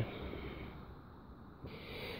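Quiet background with a short breath drawn in near the end.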